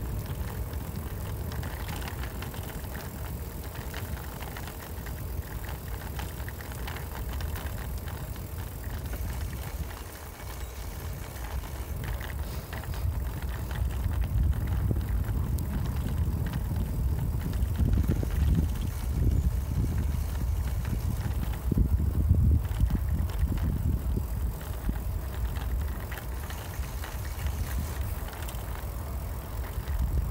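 Bicycle rolling along a tarmac path: a steady low rumble of tyres and wind on the microphone, growing louder through the middle of the stretch.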